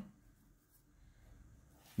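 Faint rustle of a hockey jersey's fabric rubbing in the hands, a soft patch of scraping about a second in.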